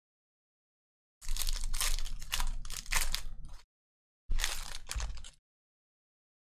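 Foil wrapper of a 2020 Panini Prizm football card pack being torn open and crinkled by hand. It comes in two bursts: a longer one of about two seconds, then a shorter one about a second later.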